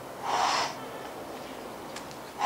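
A person breathing hard while exercising: one sharp, forceful breath about a quarter second in, lasting about half a second.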